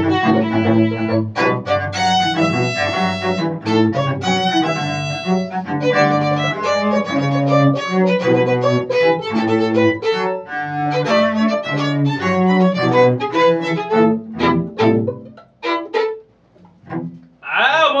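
Small string ensemble of violins and cello playing a lively Venezuelan gaita with a bouncing, rhythmic bass line. Near the end the piece closes on a few short detached chords, then a voice exclaims.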